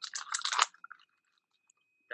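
A short burst of crackling, rustling clicks close to a microphone, like something being handled, dying away within the first second; a faint steady high whine remains after it.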